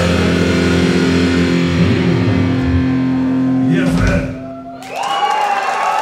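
Live metal band ending a song: distorted electric guitars and drums hold a final ringing chord that cuts off about four seconds in. After a brief dip, a loud held shout comes in.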